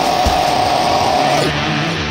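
Death-metal guitar-and-vocal cover: a harsh vocal scream held on one note over a distorted Harley Benton electric guitar riff. The scream breaks off about three-quarters of the way through while the guitar plays on.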